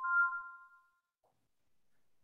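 A short two-tone electronic chime, like a computer notification ding, fading out within about a second.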